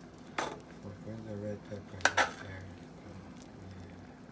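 A metal utensil stirring a pot of soup and clinking against the pot. There is one knock about half a second in, then two sharper clinks a little past two seconds, which are the loudest sounds.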